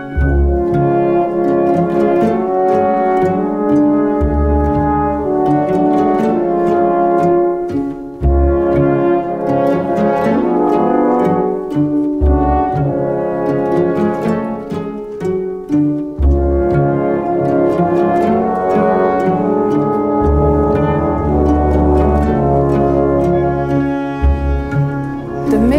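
Symphony orchestra playing: French horns hold chords over quick repeated notes from the strings and harps, while deep bass notes come and go every few seconds.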